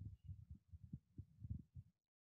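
Near silence with faint, irregular low thuds and rumble that stop just before the end.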